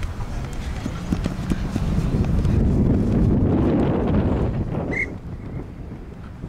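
Running footsteps thudding on grass close to the microphone, building up and then stopping about five seconds in, with a short high shout just after.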